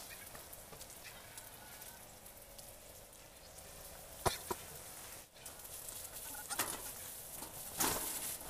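Dry grass stalks rustling and crackling as hands sort and bunch them into a broom bundle, with a sharp snap a little past four seconds in and louder rustles near the end.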